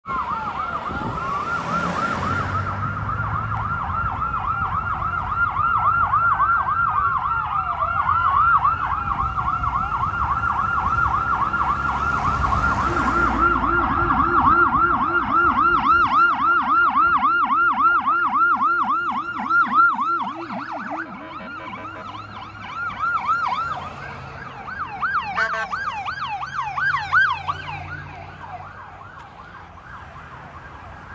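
Police car electronic sirens on a fast yelp, rising and falling about four times a second, with slower wail sweeps mixed in at the start, over passing traffic. A second, lower-pitched siren sounds along with the yelp for several seconds past the middle, and the sirens fade out near the end.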